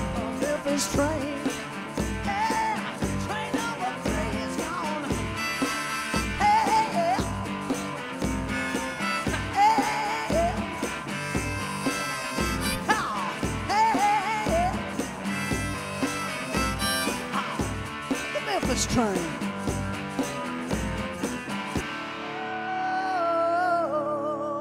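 A woman singing a rock song with a Fender semi-hollow electric guitar over a steady low beat. About two seconds before the end the beat drops out, leaving a held guitar chord and a sustained sung note ringing.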